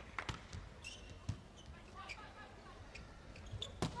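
Volleyball struck in a rally in an indoor arena: a jump serve about a third of a second in, another contact about a second later, and the loudest hit, an attack at the net, just before the end. Faint short squeaks and calls can be heard between the hits.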